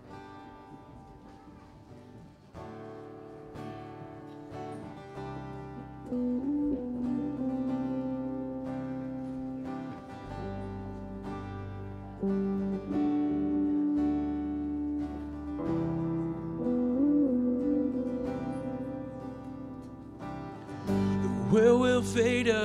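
Live worship band playing a song's instrumental intro: strummed acoustic guitar with electric guitar and piano, building in loudness as low bass notes come in about halfway. A singing voice enters at the very end.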